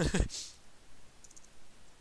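Computer keyboard keys clicking faintly as a line of code is typed, after a short breathy laugh, falling in pitch, at the very start.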